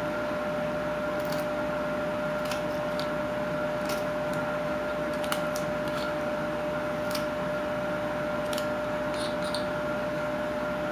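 Carving knife slicing chips from a wooden figure blank: scattered short, crisp snicks, about ten spread irregularly, over a steady background hum.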